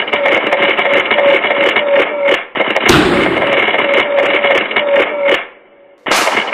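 Helicopter rotor sound effect: a steady rhythmic chop, about two and a half beats a second. There is a sudden thud about three seconds in, and the chop fades out near the end.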